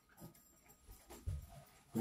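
Faint eating sounds: a person chewing, with a few brief soft mouth noises, the strongest and lowest about a second and a quarter in.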